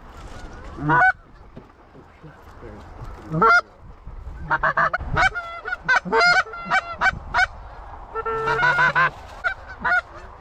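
Canada goose honks: a few single honks at first, then from about four and a half seconds in a quick run of overlapping honks and clucks, with another cluster near the end.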